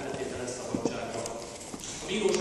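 A short lull in a judge's spoken reading in a large courtroom, with two sharp clicks a little under a second in and fainter ones after.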